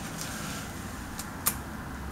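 Quiet room tone with a low steady hum, broken by one sharp click about one and a half seconds in.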